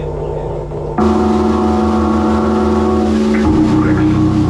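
Doom metal band playing live through amplifiers: heavy guitars and bass hold a droning chord. It jumps louder about a second in, and the low notes shift to a new chord about three and a half seconds in.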